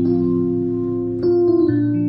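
Roland HP205 digital piano playing slow chords in one of its alternative, non-piano voices: the notes hold steady without fading, and the chord changes a little over a second in.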